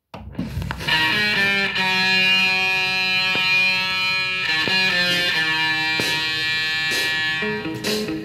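A northern soul 7-inch single playing on a turntable. After a brief silent gap between records, the new record's guitar-led instrumental intro starts under a second in.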